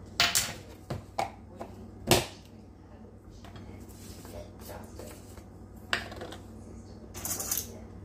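Scattered knocks and clicks of small kitchen containers being handled and set down on a countertop, the loudest about two seconds in, with a short rustle a little before the end.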